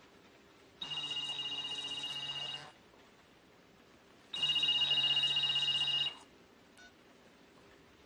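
A phone ringing twice: two electronic rings of about two seconds each, about a second and a half apart, each a steady high-pitched trill.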